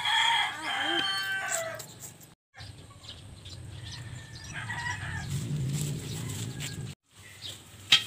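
A rooster crowing once, a long call that falls in pitch as it ends about two seconds in, followed by faint background sound; the audio drops out to silence briefly twice.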